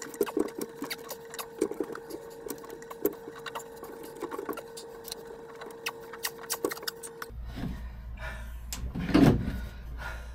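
Rubber hose being worked and forced by hand onto a tight barb fitting: a run of short clicks, creaks and knocks as the hose is twisted and pushed. A steady faint hum lies behind, giving way to a lower hum about seven seconds in, and a louder bump comes near the end.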